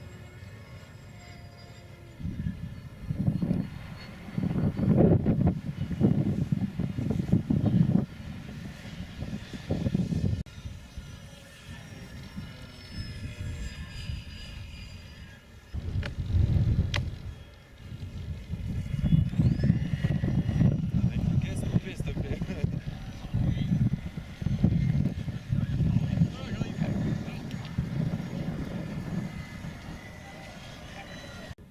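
Wind gusting on the microphone in heavy low rumbles, with the thin whine of a radio-controlled model seaplane's motor and propeller flying overhead, its pitch rising about two-thirds of the way through.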